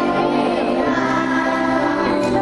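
Children's choir singing a Christmas song in unison over an instrumental accompaniment with a steady low bass line.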